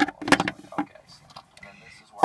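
Small plastic toy figures knocking and clattering on a hard surface, with a few sharp clicks in the first second. A child's voice murmurs among them, and it is quieter after that.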